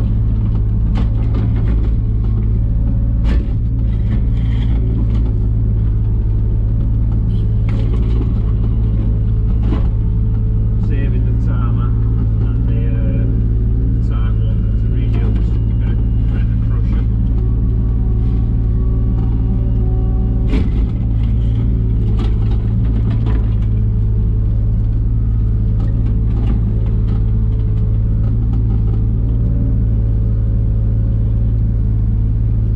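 3-tonne JCB mini excavator's diesel engine running steadily under load, heard from inside the cab, as the bucket digs the trench. Short knocks and scrapes from the bucket and arm come through over the engine, the sharpest about 3 seconds in and again about 21 seconds in.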